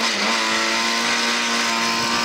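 Lada 2107 rally car's four-cylinder engine held at high revs at full throttle along a short straight, a steady sustained note heard from inside the stripped cabin.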